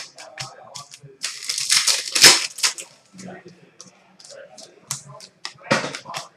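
Trading cards being flipped through by hand, card stock flicking and tapping against card in a quick, irregular run of clicks.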